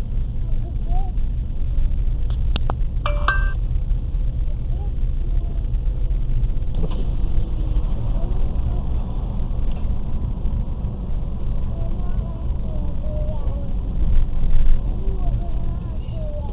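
Low, steady rumble inside a car's cabin as it rolls slowly in traffic, with quiet, muffled voices talking. A click and a short beep-like tone about three seconds in.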